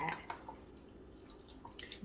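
A spoon stirring thick, half-melted chocolate chips and sweetened condensed milk in a glass measuring cup: faint stirring with a few light clicks, the most of them near the end.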